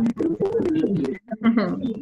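Indistinct, unintelligible voices coming through an online video call, cut up by crackling clicks from the call's audio.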